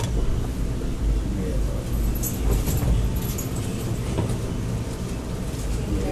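Steady low rumble with indistinct voices talking in the background and a few faint clicks.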